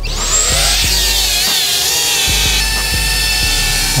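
A cinewhoop FPV quadcopter (GEPRC CineLog 30) arming: its brushless motors spin up with a quick rising whine, then hold a steady high-pitched whine of several wavering tones at low throttle on the ground. Background music with a steady beat plays underneath.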